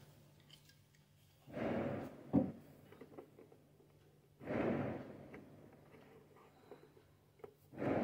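Fireworks going off: three dull booms, each dying away over about half a second, about one and a half, four and a half and seven and a half seconds in, with a sharper crack just after the first.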